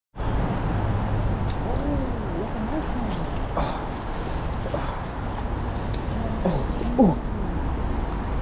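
Steady rush of a flowing river with a low rumble, under a few faint murmured voice sounds. A man's sharp "ooh" comes near the end.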